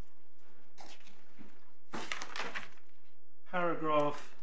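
Paper rustling as pages of hearing bundles are turned, in a few short bursts, then a brief spoken sound near the end.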